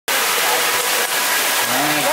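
FlowRider sheet-wave machine: a thin sheet of water pumped up and over the padded ride surface, rushing steadily. A man's voice starts near the end.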